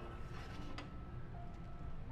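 Soft background music with held notes, under a faint clink or two as a baking tray is drawn out of a countertop air fryer oven.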